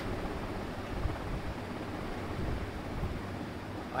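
Steady background hiss with a low rumble, with no distinct events: the room and microphone noise of the recording.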